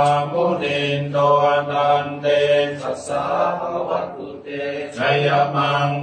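A Thai Buddhist monk chanting Pali blessing verses (paritta) in a steady, level recitation tone, with a short break for breath about four seconds in.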